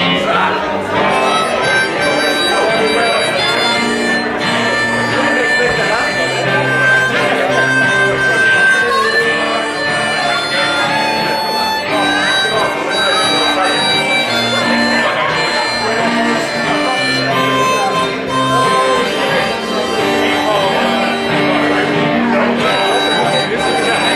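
Acoustic guitar strummed steadily under a harmonica played from a neck rack, the harmonica holding long sustained notes: an instrumental song intro.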